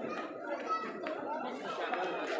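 Indistinct chatter of many people talking around, no single voice clear.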